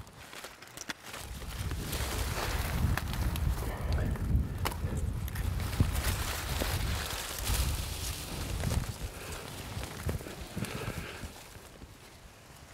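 Footsteps pushing through a dry sorghum field, stalks and seed heads brushing and rustling against clothing as a hunter stalks in close. A low, uneven rumble runs under it, fading near the end.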